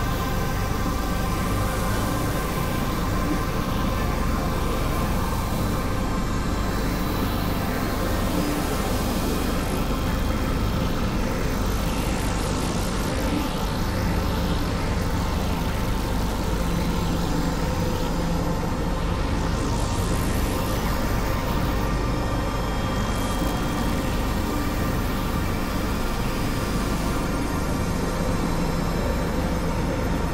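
Dense experimental electronic drone-and-noise music: several layered drones holding steady pitches over a thick, rumbling, rushing noise bed that never lets up. Sweeping hisses rise and fall in the treble several times.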